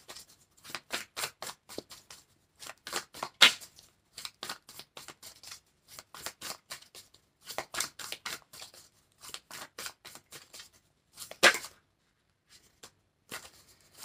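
A deck of Light Seer's Tarot cards being shuffled overhand, hand to hand: runs of quick card flicks and riffling with short pauses, including a louder snap about three and a half seconds in and another near eleven and a half seconds.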